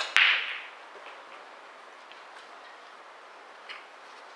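A single sharp crack of a hard impact just after the start, with a short hissing tail, then low hall noise and a few faint clicks.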